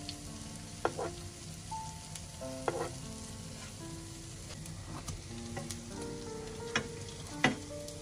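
Potato-dough buns sizzling in hot oil in a frying pan, with a metal spoon clinking sharply against the pan about five times as oil is spooned over them.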